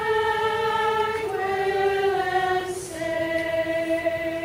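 Women's community choir singing long held notes in chords, the harmony moving to new notes about a second in and again near the end.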